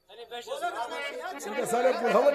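Several people talking over one another, the voices growing louder toward the end.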